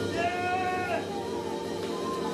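A man's high, held shout of praise lasting under a second, its pitch dropping as it ends, over sustained chords from the church keyboard.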